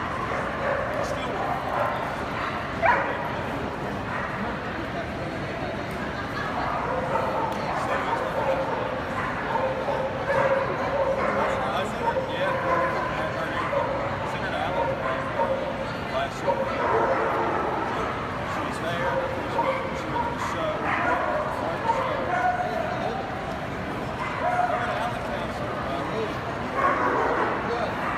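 Show dogs barking and yipping over steady crowd chatter, with a sharp knock about three seconds in.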